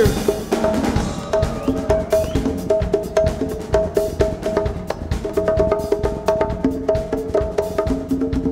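Live rock band playing an instrumental passage from the soundboard mix: a busy drum kit groove with sharp percussive clicks, under a riff of short repeated notes.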